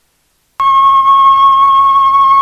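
Brief silence, then about half a second in a single high musical note starts suddenly and is held steady: the opening note of the instrumental introduction to a Tày folk song.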